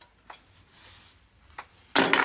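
A few faint clicks of metal shears being handled at a carpet edge, with light rustling of the carpet, then a sharper click near the end.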